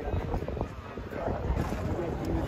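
Wind buffeting the phone's microphone, an uneven low rumble that comes in gusts, with faint voices from the field underneath.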